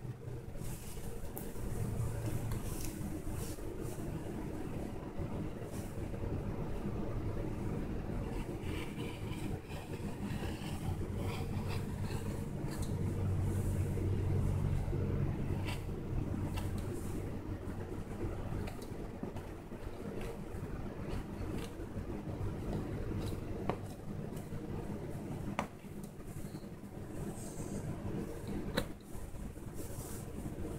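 A handheld rotary cutter rolling through knit T-shirt fabric on a floor, with faint scraping and scattered small clicks from the blade and fabric. Under it runs a steady low hum that swells for a few seconds about halfway through.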